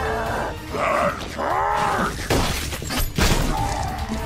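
Action-scene background music under cartoon fight sound effects: a strained, groaning voice in the middle, then two sharp crashing hits about a second apart near the end.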